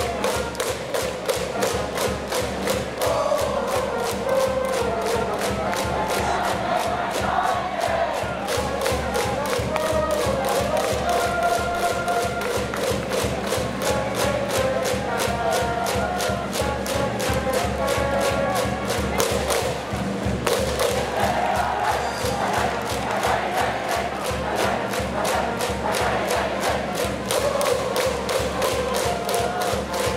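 Stands cheering-section music at a baseball game: a steady, regular drumbeat with the crowd chanting and singing along.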